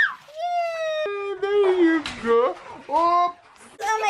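A young child's drawn-out vocal sounds, not words: a long high held "aaah", then a lower one sliding slowly down, then a couple of short rising calls.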